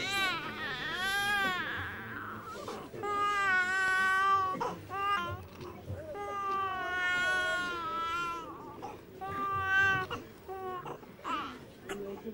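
A newborn baby crying: a run of long, high cries broken by short breaths, the first one rising and falling in pitch.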